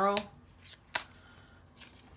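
Oracle cards being handled and drawn from a deck: a few light clicks and rustles of card stock, the sharpest about a second in.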